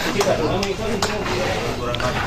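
Men's voices talking indistinctly in the background, with a few light knocks.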